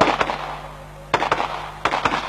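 A run of sharp explosive bangs, about five in two seconds, coming in close pairs, each with a short ringing tail.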